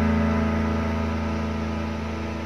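Instrumental karaoke backing track of a slow ballad: one sustained chord fading slowly, with no singing.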